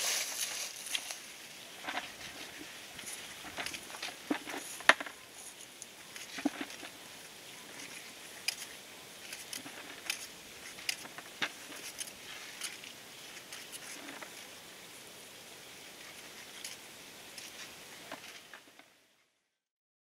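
Soft rustling and scattered sharp crackles of dry potato tops and soil being handled as potatoes are dug out by hand. The sound fades out near the end.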